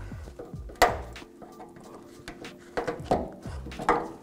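A trim tool prying at a plastic push-in anchor in a taillight mounting hole: one sharp click about a second in, then a few smaller clicks and scrapes near the end, over background music.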